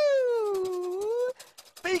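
A person's long drawn-out vocal note lasting about a second and a half, dipping then rising in pitch. Near the end a voice begins to call out.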